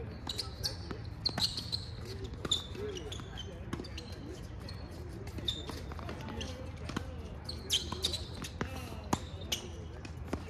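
Tennis balls struck by rackets and bouncing on a hard court during a doubles rally: a string of sharp hits at irregular intervals.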